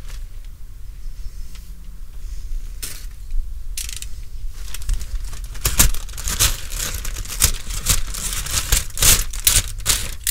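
A bag of barbecue charcoal being handled and rummaged through: crinkling, rustling and crackling. It is sparse at first and grows into a dense run of crackles from about four seconds in.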